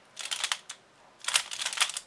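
An X-Man Bell magnetic Pyraminx being turned by hand, its layers clicking as they move: two quick bursts of turns about a second apart.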